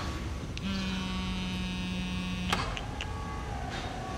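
A phone vibrating: a steady low buzz lasting about two seconds, cut off by a sharp click.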